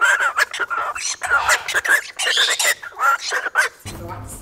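Galah cockatoo chattering in a high, speech-like babble, broken by short clicks between the phrases.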